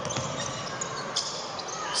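Basketball being dribbled on a hardwood court, under a steady murmur of arena crowd noise.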